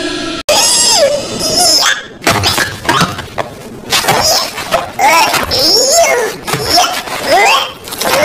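A sudden crash-like sound effect about half a second in, then a high voice making a string of cries that slide up and down in pitch.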